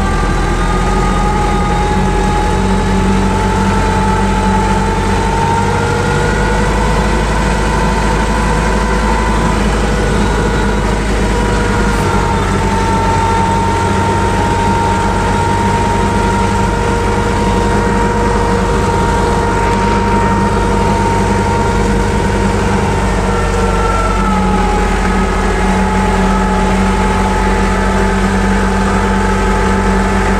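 Tractor engine running steadily under load while towing harrows and rollers, heard from on the tractor; its pitch drifts slightly now and then.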